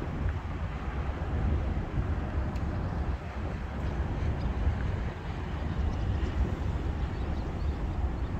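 Steady low rumble of a vertical-lift bridge's span being lowered on its machinery, with wind buffeting the microphone.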